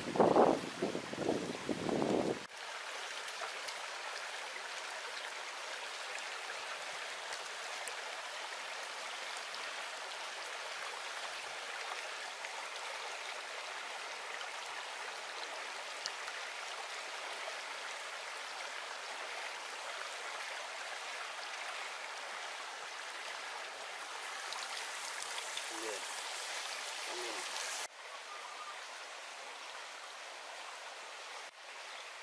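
Shallow stream running steadily over rocks, a constant rushing of water.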